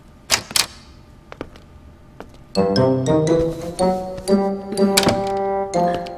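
Two sharp knocks in quick succession near the start, then a couple of faint clicks. Background music with sustained notes and light percussive hits starts about halfway through.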